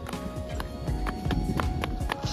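Background music over quick footsteps, about four a second, of a small child running in sandals on pavement.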